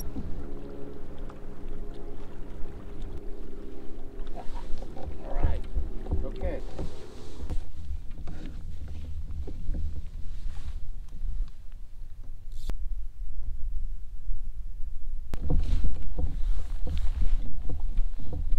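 Fishing boat on the water: a steady motor hum for the first seven seconds or so, then low wind rumble on the microphone that comes and goes, with a few short vocal sounds.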